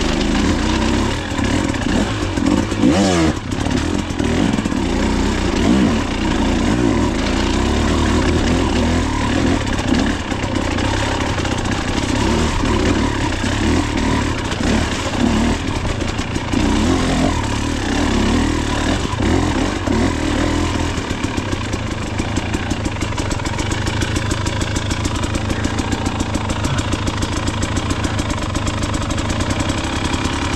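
KTM enduro dirt bike engine working at varying revs over rough forest singletrack. About two-thirds of the way through it settles to a slow, even low-rev chug.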